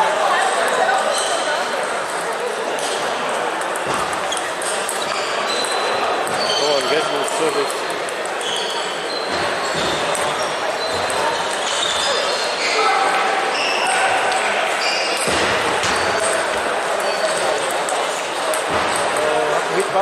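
Busy table tennis hall: celluloid-plastic balls clicking off bats and tables at many tables at once, with short high squeaks and a steady murmur of voices ringing in the large room.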